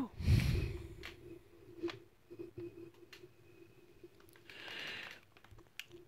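Handling noises of someone reaching for a spoon: a loud rustle and bump in the first second, then a few light clicks, and a short breathy hiss close to a headset microphone near the end.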